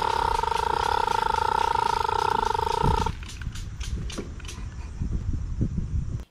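Homemade pneumatic bicycle's air-driven drivetrain running as it is ridden: a steady whine with a fast pulsing flutter that cuts off suddenly about three seconds in, leaving quieter rustling and a few clicks.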